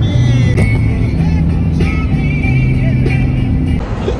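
Music with a low bass line that moves in steps, over the low rumble of a car on the road; it cuts off just before the end.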